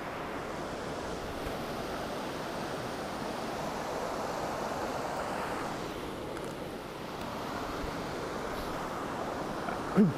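Fast-flowing river rushing over rocks: a steady wash of water noise that swells slightly around the middle.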